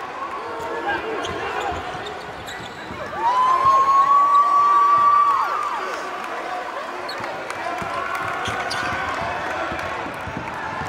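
Basketball being dribbled on a hardwood court, with short sneaker squeaks and crowd voices in a large gym. About three seconds in, a long steady high tone sounds for about two seconds and is the loudest thing heard.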